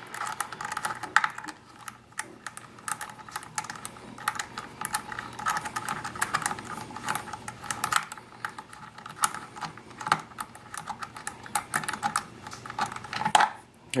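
Rapid, irregular small clicks and ticks of a sling-mount screw being spun out by hand from a Hi-Point 995 carbine's polymer stock, the screw threading out of a nut captured inside the stock.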